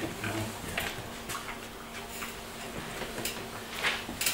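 Soft handling noises of sheets of paper and a laptop: scattered rustles and light taps, with a low steady hum underneath.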